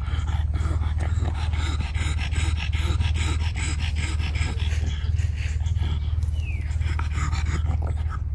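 Pug panting hard with its tongue out, quick breathy pants several times a second, as a flat-faced dog does to cool down when hot and tired after play. A steady low hum runs underneath.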